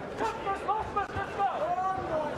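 Indistinct voices talking over steady arena background noise.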